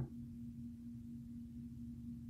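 Faint room tone: a steady, even low hum holding one pitch.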